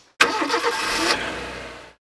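A car engine starts suddenly and runs, then fades away toward the end.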